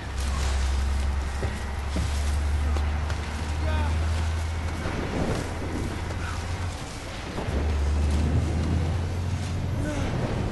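Action-film sound mix of a moving truck in a storm: a deep steady rumble under wind and road noise, with short strained vocal sounds from the men. The rumble drops out briefly around seven seconds in and comes back.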